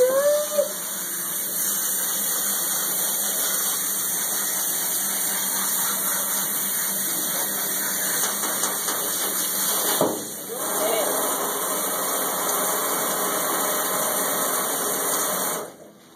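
Steady rush of running water from a bath sprayer rinsing a puppy in a steel tub. It dips briefly about two-thirds of the way through and cuts off shortly before the end.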